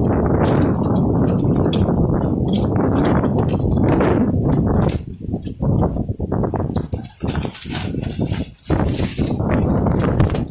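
Strong gusty wind buffeting the microphone, a loud low rumble that runs steadily for about five seconds, then comes and goes in uneven gusts with a few knocks.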